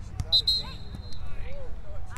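A referee's whistle blown once, a sharp start held for just under a second, over scattered voices from the sideline.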